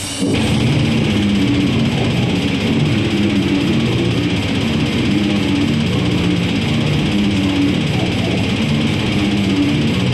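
Live heavy metal song: an electric guitar riff starts loudly just after the beginning and plays on without a break, the notes moving low in pitch.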